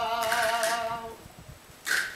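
Unaccompanied solo voice singing a saeta, the flamenco-style sung prayer of Holy Week processions. It holds a long, wavering note that ends about a second in, followed by a short hiss near the end.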